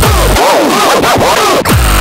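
Fast gabber/hardcore techno: the pounding kick drum drops out for about a second, leaving arching, pitch-bending synth tones over noise, and the kicks come back in near the end.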